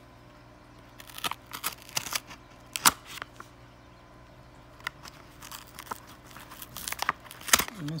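A paper mystery-pack envelope being slit open with a knife and handled: irregular scratching, crinkling and tearing of paper in two spells, with sharp crackles near the third second and just before the end.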